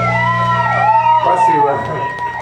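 Electric guitar feedback through an amplifier, several pitched tones sweeping up and down in repeated siren-like arcs, over a steady low amplifier hum.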